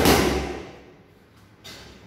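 A boxing glove punch landing on a focus mitt, its loud slap echoing in a large gym and dying away over about half a second. A faint tap follows near the end.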